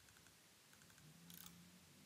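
Near silence: faint room tone with a faint double click of a computer mouse a little past halfway.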